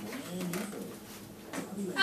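Radio talk show playing in the background, a low speaking voice between phrases.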